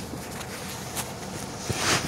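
Faint clicks and a short scraping hiss near the end from a Honda steering wheel lock assembly being worked by hand inside its housing, over a steady low background hiss.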